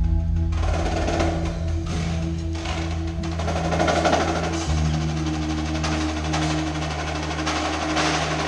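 Percussion ensemble music: held low bass notes, which change to a new chord about halfway through, under a dense run of quick mallet and drum strokes.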